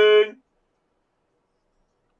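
A man's voice holding a long sung note that stops about a third of a second in, followed by complete silence.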